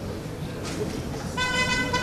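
A horn sounds one steady, unwavering note for about a second, starting a little past the middle, over a background of general noise.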